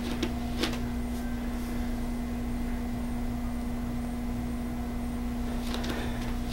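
Steady electrical hum of room tone, with a few faint clicks near the start and again near the end.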